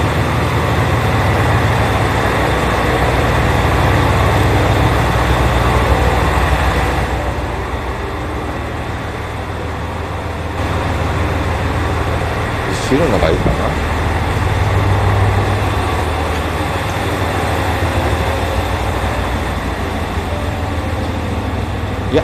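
A train standing at the platform, running with a steady low hum and rumble; for a few seconds about seven seconds in the sound turns duller.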